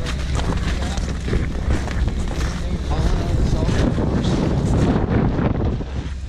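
Wind buffeting the camera microphone with a steady low rumble, over footsteps crunching in snow.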